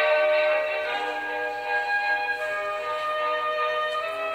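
Orchestral music playing, with long held notes that change every second or so.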